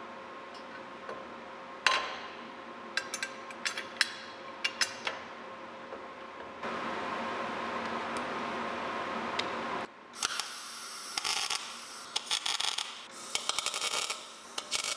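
Scattered light metallic clicks and taps as steel parts are handled. From about ten seconds in, a MIG welder's arc crackles in short, stuttering bursts as steel is welded onto the truck's front chassis.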